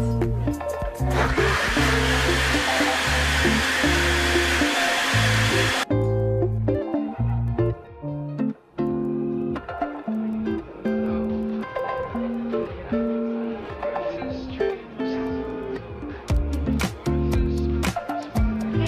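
Breville countertop blender running as it blends a smoothie with frozen berries. It starts about a second in and cuts off suddenly about four and a half seconds later, over background music.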